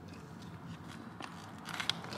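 A person chewing a bite of soft egg white wrap, with a few faint clicks in the second second.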